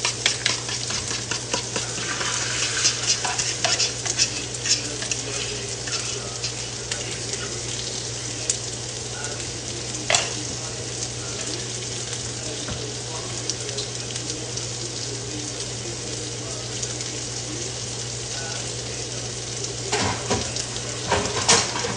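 Italian turkey sausages sizzling in a frying pan, crackling with fat spatter pops that are busiest in the first few seconds and settle to a steadier sizzle. A steady low hum runs underneath, and a single sharp click comes about ten seconds in.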